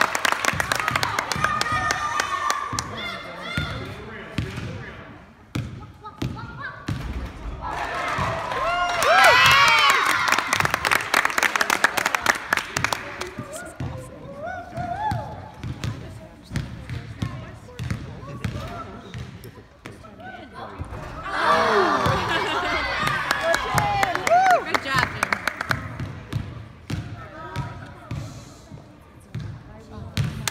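Basketball bouncing on a hardwood gym floor during repeated shots at the hoop. Twice, about eight seconds in and again about twenty-one seconds in, a crowd of spectators shouts and cheers for several seconds.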